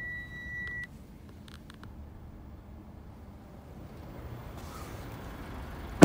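A car's electronic warning chime: one steady, high beep about a second long at the start, followed by a couple of faint clicks, over a low steady rumble.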